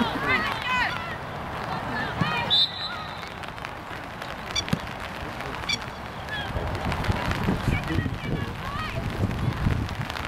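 Distant high-pitched shouts and calls from players and spectators across a soccer field, with a couple of sharp knocks near the middle. In the second half, wind rumbles on the microphone.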